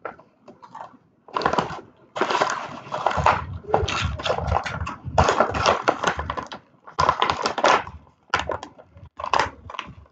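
Plastic snack pouch crinkling and rustling in irregular bursts as it is handled and opened.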